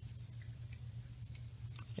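A few faint clicks and taps of small plastic toy accessories being handled, a 1/6-scale figure's ammunition box and rockets, over a steady low hum.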